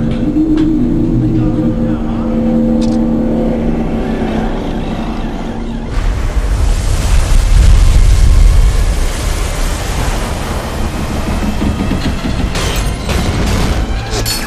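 A ship's engine-room machinery drone with a steady held tone. About six seconds in, a loud, deep roar of storm wind and heavy seas against a tanker's hull takes over, with sharp knocks and crashes near the end.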